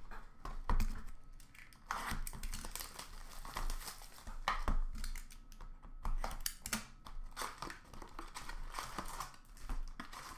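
Irregular crinkling and rustling of plastic and cardboard packaging as a hockey card hobby box is handled and opened, with sharp crackles and light taps among the rustle.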